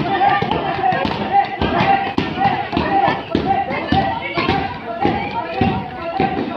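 Taekwondo kicks striking handheld kick pads in quick, irregular succession, a run of sharp thuds, with voices sounding over them throughout.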